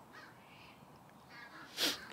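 Faint crow-like caws in a quiet open space, then a short, sharp rush of noise near the end.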